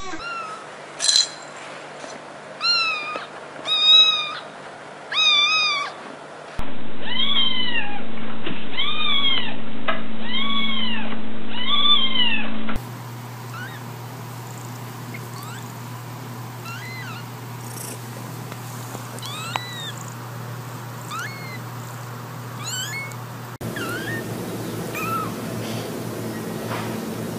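Cats and kittens meowing in a series of short clips. A longhaired ginger cat gives about five short meows. Four long, loud, arched meows follow over a steady hum. Then a newborn kitten makes thin, high cries that rise in pitch, and near the end young kittens mew faintly.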